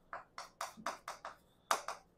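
Chalk writing on a chalkboard: a quick run of about eight short, sharp chalk strokes and taps as a word is written.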